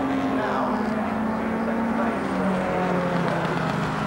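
Racing car engines running at speed on a track, a steady engine note that drops a little in pitch partway through.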